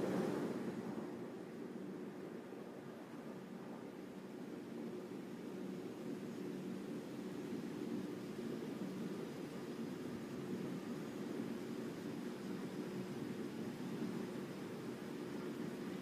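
Steady faint hiss with a low, even hum, unchanging throughout: the background noise of the broadcast's open audio line.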